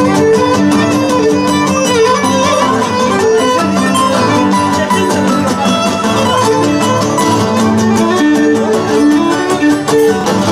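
Live Cretan folk dance music: a bowed Cretan lyra carrying the melody over strummed laouta (Cretan lutes) keeping a steady, even dance beat.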